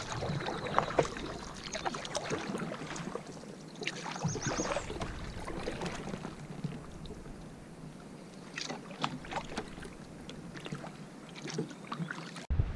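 A double-bladed paddle stroking a solo canoe along a calm river: the blades dip and pull through the water in an uneven run of splashes, drips and small clicks.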